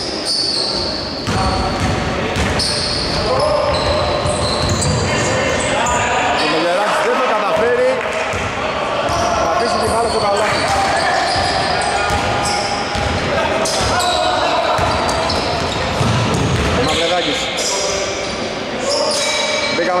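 A basketball being dribbled and bouncing on a hardwood gym floor during play, with players' voices and shouts echoing through a large hall.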